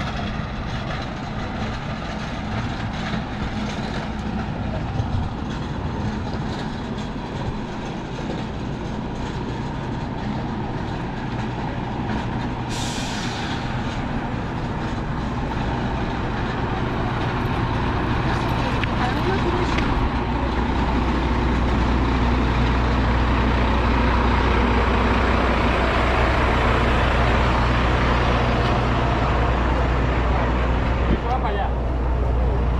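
Diesel truck engine idling with a steady low hum that grows louder as it is approached. A short hiss of air about 13 seconds in.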